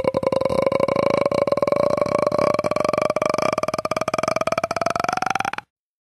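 A rapidly pulsing electronic synthesizer tone, held on one note and then sliding slowly upward in pitch, steeper near the end, before cutting off suddenly.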